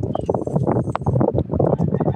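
A woman talking, her voice close to the microphone in short, choppy bursts.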